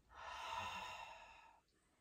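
A woman's long, breathy exhale, lasting about a second and a half and fading out.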